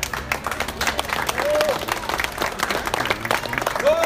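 A small street crowd clapping for an accordion street musician as his song ends, with two short calls from the onlookers, one about a second and a half in and one near the end.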